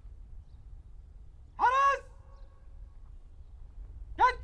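A single loud shouted military drill command about a second and a half in, sliding up in pitch into a brief held vowel and cut off after under half a second, over a faint low background rumble.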